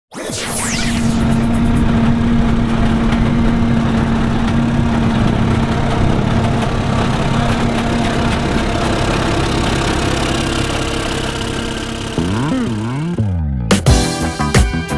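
Banks Super-Turbo Freightliner race truck's Detroit diesel running with a steady hum, then revved up and down several times near the end, heard with music and a falling whoosh at the start.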